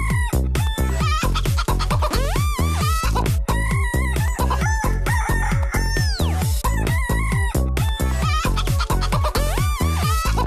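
Techno dance track with a fast, steady kick-drum beat, built from sampled chicken clucks and rooster crowing; a long crow rises and falls around six seconds in.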